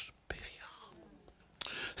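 A man's soft, breathy voice or breath close to the microphone in a short pause between spoken lines, with a small click just after the start and another about a second and a half in.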